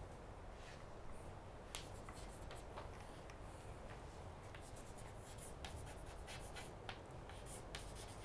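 Chalk writing on a chalkboard: faint, unevenly spaced taps and short scratches as each letter is stroked out.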